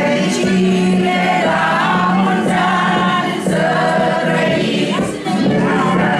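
A group of men and women singing together, unaccompanied, as they raise their cups in a toast; the voices hold long notes in a steady sung line.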